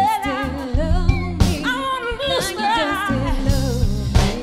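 Live soul band playing, with a woman singing the lead vocal over drums and bass, and sharp drum hits every second or so.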